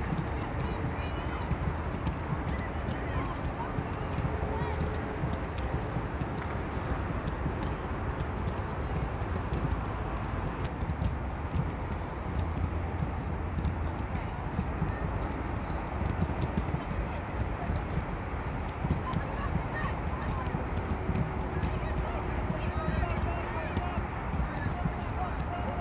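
Distant, indistinct voices of players and spectators calling out across a soccer field, over a steady low rumble.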